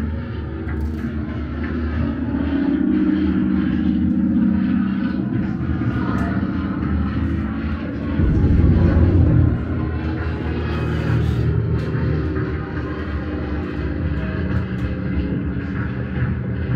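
Loud, continuous low rumble of a played-back battlefield soundscape in a trench diorama, swelling about eight seconds in.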